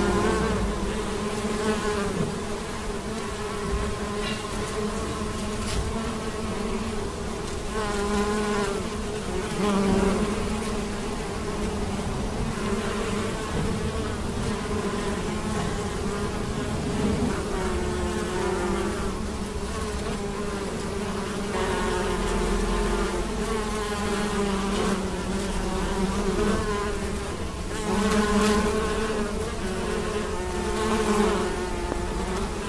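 Many bees buzzing together as they forage on maize flowers. The overlapping hum wavers in pitch and swells as single bees fly close to the microphone and away again.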